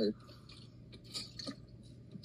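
A person drinking ice-cold water from a plastic squeeze sports bottle: a few faint, short gulping sounds about a second in, over quiet car-cabin room tone.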